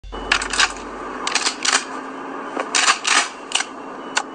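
Opening of a recorded rock track before the band comes in: a scattering of short, irregular clinking noises over a faint steady hiss, with a low hum fading away in the first second or so.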